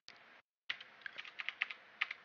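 Computer keyboard typing: a quick run of about ten faint keystrokes lasting about a second, starting a little way in.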